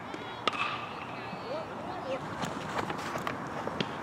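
Metal baseball bat striking a pitched ball about half a second in: a sharp ping with a brief metallic ring. A few lighter clicks and distant voices follow.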